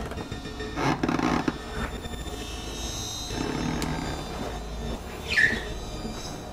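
Horror-film score music, with a louder, rougher passage about a second in and a short, loud squeal sliding down in pitch near the end.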